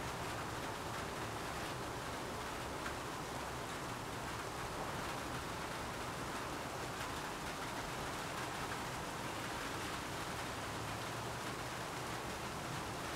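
Steady, even hiss of background noise with no distinct strokes or events.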